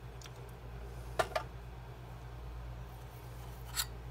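Soldering iron tip being wiped clean: short scratchy rubs about a second in and again near the end, over a steady low hum.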